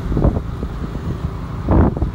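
Motorbike ride heard from the pillion seat: steady engine and road rumble with wind buffeting the microphone in irregular gusts, the loudest rush shortly before the end.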